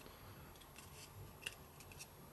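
Near silence, with a faint click of Pokémon trading cards being slid across one another in the hand about one and a half seconds in, and a couple of fainter ticks near the end.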